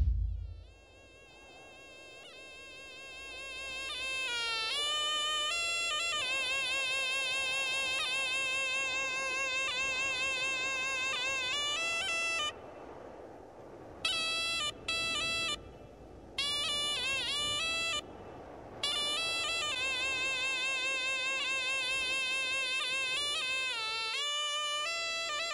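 Solo reed pipe with a flared bell playing a slow melody of held, wavering notes with pitch bends. It fades in over the first few seconds and breaks off briefly three times in the second half.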